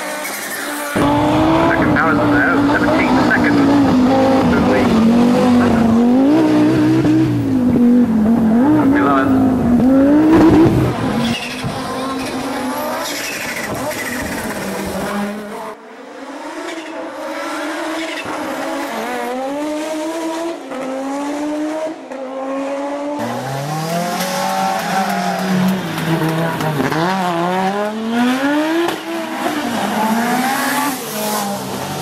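Group B rally car engines, an Audi Sport Quattro among them, revving hard and falling back in pitch again and again through gear changes as the cars pass on a tarmac stage. Several short passes follow one another, the loudest in the first ten seconds or so.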